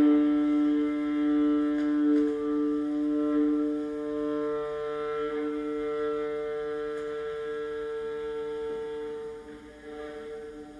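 Solo viola bowing a long sustained double stop, two notes held together, that slowly fades away over about ten seconds.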